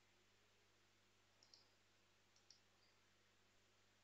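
Near silence with a faint steady hum, broken by two faint computer mouse clicks about one and a half and two and a half seconds in.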